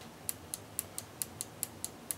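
Push-button switch clicking repeatedly, about four sharp clicks a second, as it is pressed and released over and over to step a binary counter.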